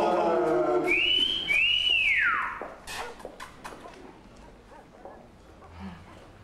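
A person's wolf whistle: a short rising note, then a second rising note that is held and slides down. Mixed voices run in the first second.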